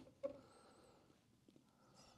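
Near silence: room tone, with a faint brief knock about a quarter second in and a very faint high chirp shortly after.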